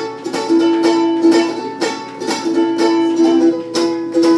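Ukulele strummed in a steady rhythm, about two strokes a second, played live in a small room.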